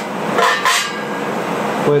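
A metal mounting plate being set down and positioned on a welded stainless-steel gas tank: a brief metal scrape and clink about half a second in.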